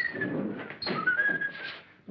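A man whistling a tune, a phrase rising in pitch about a second in, over rustling.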